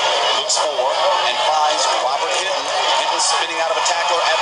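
Speech: a man's narrating voice, words unclear, over a steady hiss.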